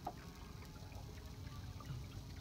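Faint water trickling and lapping along a small sailboat's hull as it moves, over a low steady rumble.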